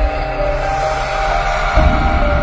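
Intro music: sustained electronic synth notes over a deep bass hit at the start, with a second bass hit near the end.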